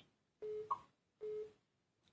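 Telephone line tone: two short beeps at one steady pitch, about a second apart, in the pattern of a busy signal.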